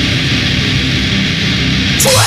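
Heavy metal band recording: a dense, steady wall of distorted electric guitar over bass and drums, with no vocals.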